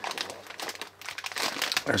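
A plastic cookie bag crinkling and crackling as its peel-open resealable flap is slowly pulled back, in irregular small crackles.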